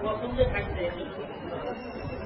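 Indistinct speech: voices talking with no clear words.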